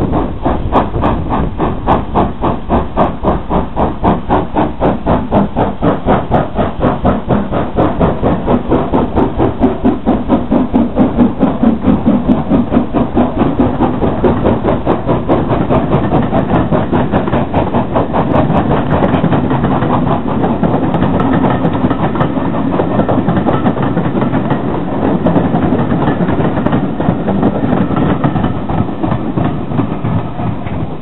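Steam locomotive working past at close range, its exhaust beating in a steady rhythm, followed by its train of coaches rolling by with rhythmic wheel clatter on the rail joints.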